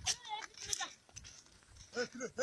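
Cattle calling faintly in short, bleat-like calls with a wavering pitch, one near the start and a few more at the very end.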